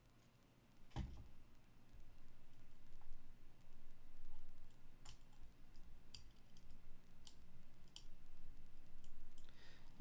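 Small plastic clicks and rustling handling noise from hands working on a NanoPi R2S mini router: one sharper click about a second in, then several lighter clicks later.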